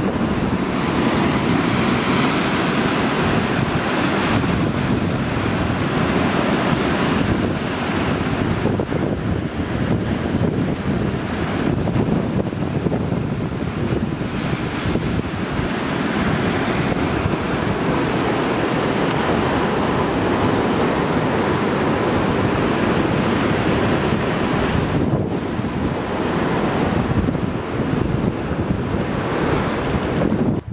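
Rough sea surf breaking and surging over rocks, with strong wind buffeting the microphone.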